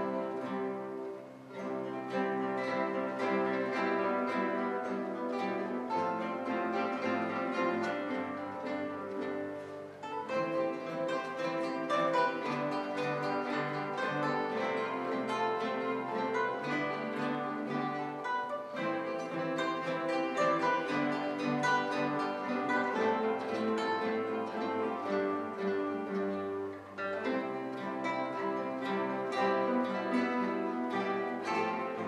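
A classical guitar ensemble playing a piece together, many guitars plucking notes and chords at once, with a few brief breaks between phrases.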